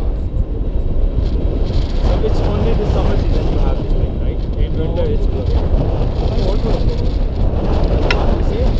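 Steady, loud wind buffeting on the camera microphone from the airflow of a paraglider in flight, a heavy low rumble with no breaks, with faint muffled voice fragments under it.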